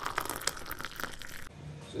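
Cooking oil being poured from a plastic bottle into a hot steel pot, with a dense crackle that stops abruptly about one and a half seconds in.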